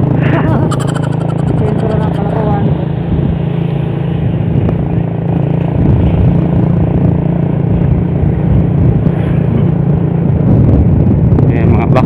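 Motorcycle engine running steadily while riding along a road, with wind rumbling on the microphone.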